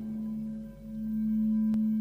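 Meditation music of long held tones. A low hum swells and fades slowly over a fainter tone beneath it that pulses several times a second, with faint higher tones held above. A faint click comes near the end.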